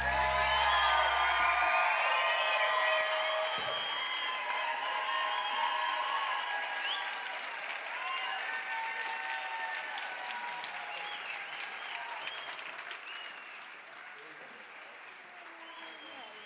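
Concert audience applauding and calling out after a song, with the band's last low chord ringing out for the first two seconds; the applause then slowly fades away.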